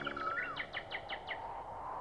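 Birdsong: a quick run of short chirps with a gliding whistle, then a series of about seven rapid downward-sweeping chirps, fading out after about a second and a half.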